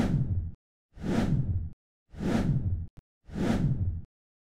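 Four whoosh sound effects, one after another, each lasting under a second with total silence between them. They mark photos sliding onto the screen in an edited montage.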